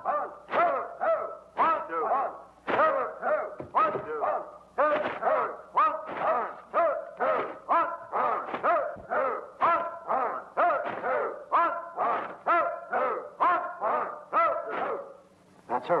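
A class of martial-arts students shouting together in time with their drill strikes, about two short rising-and-falling shouts a second. The shouting stops near the end.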